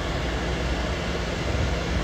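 Steady vehicle background noise: a low rumble and hiss with a faint steady hum, heard from inside a car with its door open.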